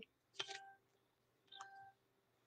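Two short electronic beeps from a gadget, identical and about a second apart, each a brief steady tone with a click at its start.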